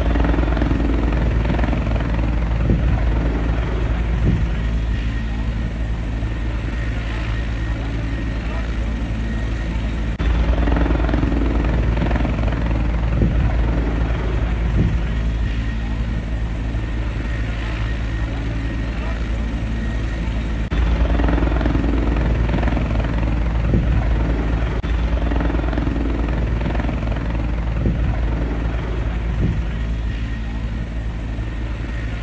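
Helicopter running close by, a steady heavy rotor and engine drone with people's voices over it. The level jumps suddenly about ten and twenty seconds in.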